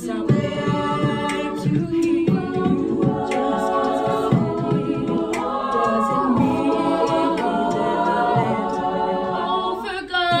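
All-female a cappella group singing: two lead singers on handheld microphones over held backing harmonies from the group.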